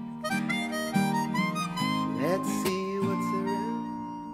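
Harmonica solo over strummed Yamaha acoustic guitar: a quick run of notes, bent notes rising about halfway through, then a long held note, with the guitar chords struck about once a second.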